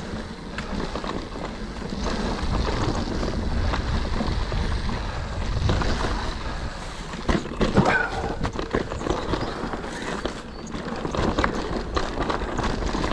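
Cube Stereo Hybrid 140 electric mountain bike ridden fast down a dirt singletrack: tyres on loose dirt and stones with a steady rumble, and the bike rattling and knocking over bumps. A burst of harder knocks comes about eight seconds in.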